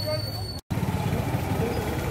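Busy street sound: a steady low hum of vehicle engines with people talking in the background, broken by a brief total dropout about half a second in.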